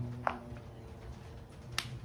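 Two sharp clicks about a second and a half apart, over a low, steady hum.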